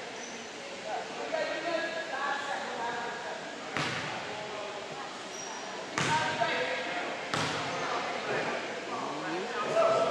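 A basketball bouncing on a hardwood gym floor, three sharp bounces, about four, six and seven seconds in, each echoing in the hall, under indistinct chatter of voices.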